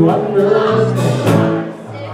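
Live dance band playing a song, with steady bass notes, drums with cymbal strokes, and electric guitar; the music dips briefly near the end.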